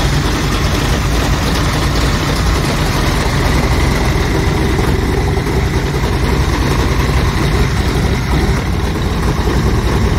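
Big-block Chevy V8 marine engine with tubular headers idling steadily.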